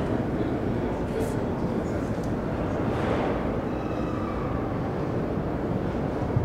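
Steady background rumble and murmur of a busy exhibition hall, with faint distant voices and no one speaking into the microphone.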